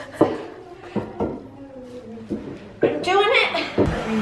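Bypass loppers clicking and creaking on a thick birch branch as they strain to cut through it, a few sharp clicks in the first second and a half, with women's voices and laughter, louder near the end.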